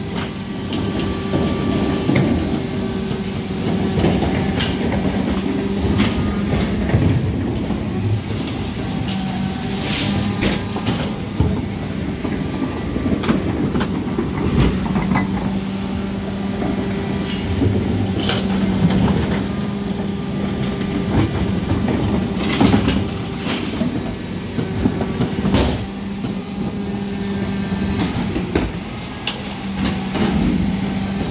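Mercedes Econic refuse lorry with a Geesink rear-end compactor running, a steady low mechanical hum from the engine and hydraulics, while 1100-litre wheeled bins are lifted and emptied at the rear, giving sharp clanks and knocks every few seconds.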